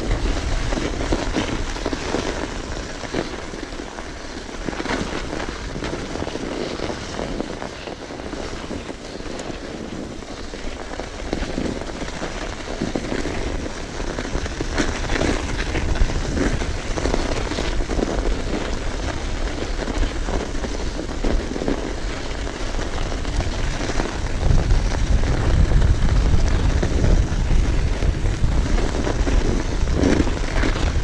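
Mountain bike rolling fast down a snowy trail: a steady rushing noise from the tyres on snow, mixed with small irregular rattles and knocks of the bike over the bumps. A heavier rumble of wind on the chest-mounted microphone builds over the last few seconds.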